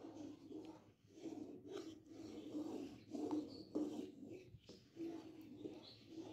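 Wooden spatula stirring and scraping thick, reducing milk around a karahi, a series of soft, irregular scrapes. The milk is cooking down on high heat to the point where it starts to turn into khoya.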